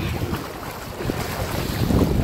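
Wind rumbling on the microphone over splashing water as people wade through shallow sea water.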